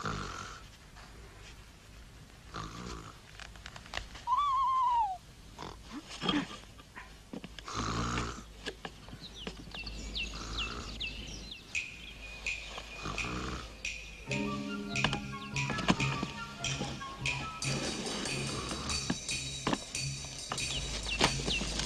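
An elderly woman snoring in slow, regular breaths about every two and a half seconds, with a single falling whistle a few seconds in. Music with quick chirping figures comes in during the second half and grows louder.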